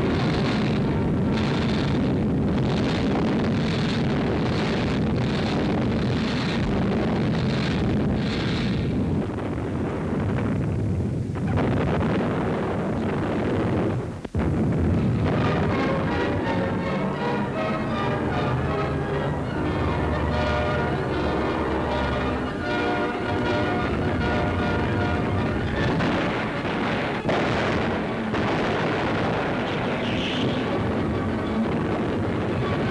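Music over repeated artillery gunfire and shell bursts, the bursts coming about once a second in the first third. There is a brief dropout about halfway through.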